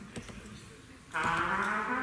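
Solo trumpet: a held note dies away, then after a short pause a loud new note comes in about a second in, with a low tone sliding upward in pitch.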